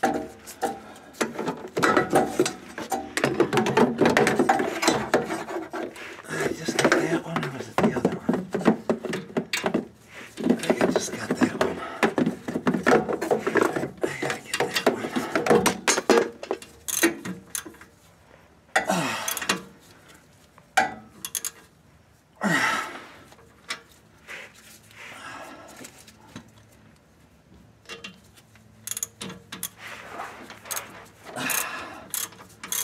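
Hand socket ratchet clicking in quick runs as nuts are run down and tightened on a Ford 8-inch differential housing, with short pauses between runs. The clicking thins out in the second half, broken by two brief falling sounds.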